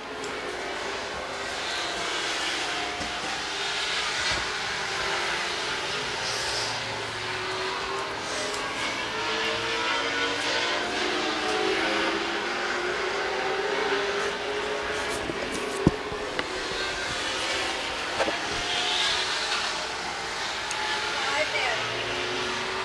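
Late model stock cars racing around an oval, their V8 engines a steady drone that rises and falls in pitch as the cars pass. A single sharp click about sixteen seconds in.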